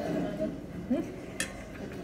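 A metal fork clinks once against a plate about one and a half seconds in.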